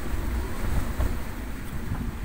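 Strong wind rushing over a sailboat in about 25 knots of wind, with low rumbling buffets on the microphone and the wash of rough sea.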